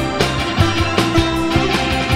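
Rock music with guitar over bass and a steady, driving drum beat, played at an even loudness.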